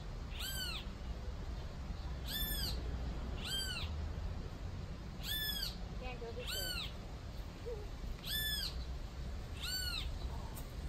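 A high mewing call, a short note that rises and then falls, repeated seven times at intervals of about one to two seconds.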